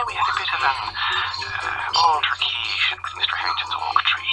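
A man talking with a thin, telephone-like sound and music underneath.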